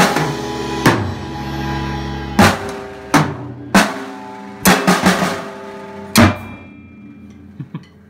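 Sonor drum kit played in single loud accented strokes about a second apart, each left to ring out, with a quick group of three hits about two-thirds of the way in. The hits thin out to two light taps near the end.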